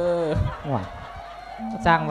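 A monk's voice holding a sung note at the end of a phrase of Isan-style sermon chanting, followed by a faint, drawn-out higher tone about a second in.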